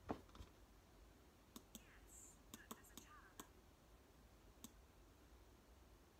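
Near silence: room tone with about eight faint, short clicks scattered through the first five seconds.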